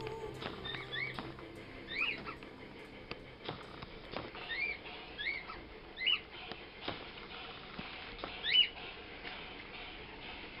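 A small animal's short high chirps, each rising then falling, about eight at irregular spacing, the loudest near the end, with a few sharp clicks and knocks between them.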